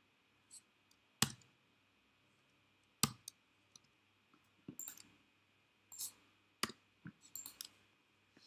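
Clicks and taps at a computer mouse and keyboard. There is a sharp click about a second in, another about three seconds in and a third nearer the end, with softer clicks scattered between.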